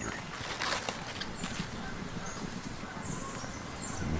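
Steady outdoor garden background with a few faint, brief high bird chirps.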